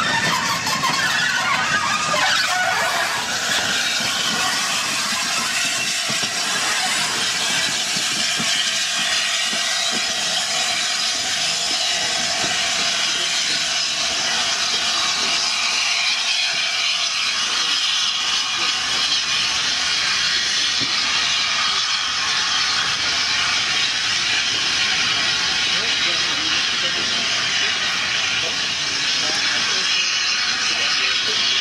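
Steam locomotive hissing steam in a loud, steady rush. A wheel squeal sounds in the first couple of seconds as coaches roll by.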